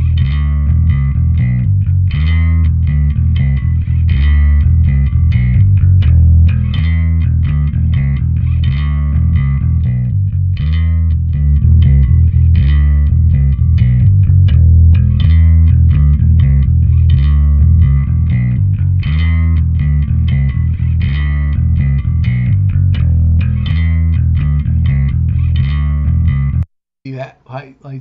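Yamaha PJ electric bass played through a Universal Audio Ampeg B-15N Portaflex amp emulation plugin: a run of full, rounded bass notes. The playing stops abruptly about a second before the end.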